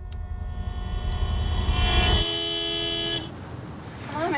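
A car horn sounding one long, steady blast that swells and then cuts off about three seconds in, over a deep rumble that stops abruptly just after two seconds. Sharp ticks land about once a second.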